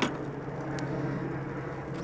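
Steady low hum and outdoor background noise, with a sharp click right at the start and a fainter click a little under a second in.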